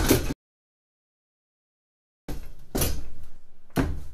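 A heavy thud of a punch landing and a man hitting the floor, cut off at once into about two seconds of total silence. Room noise then comes back with two sharp knocks.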